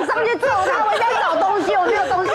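Only speech: lively, animated talk from several people, overlapping at times.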